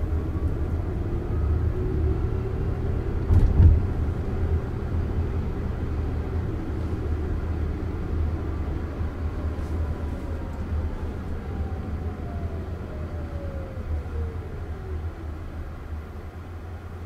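Steady low road and tyre rumble inside the cabin of a Jaguar I-Pace electric car, with a thump about three and a half seconds in. Later the electric motor's whine glides down in pitch as the car slows for a red light.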